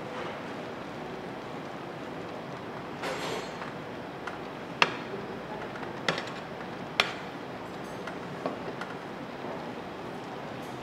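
Tteok-bokki simmering with a steady hiss in a shallow metal pan on a portable gas burner. A metal ladle stirs it, giving a scrape about three seconds in and several sharp clinks against the pan in the middle, the loudest three about a second apart.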